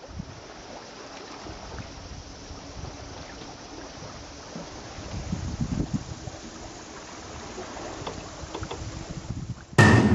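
Sea water rushing and splashing past a sailing yacht under way, with wind on the microphone; the water grows louder in the middle. A sudden loud burst near the end.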